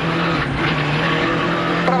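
Rally car's engine at speed, heard from inside the cockpit, holding a steady high note over road and tyre noise. The note sags slightly midway and picks up again near the end.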